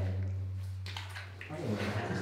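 A man's low wordless voice held on one steady note like a hum, shifting and wavering in pitch about one and a half seconds in, with a few faint footsteps in wet mud.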